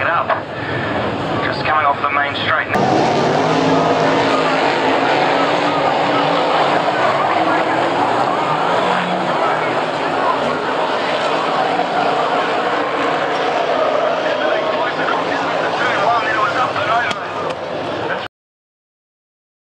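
Several speedway race car engines running hard as cars lap a dirt oval, their pitch rising and falling as they pass. About three seconds in the sound cuts in abruptly at full level; before that, a voice is heard over quieter engine noise.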